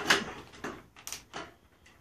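An LED replacement tube's end caps clicking and scraping against a fluorescent fixture's lamp sockets as the tube is twisted into place. There are several short clicks, the loudest right at the start.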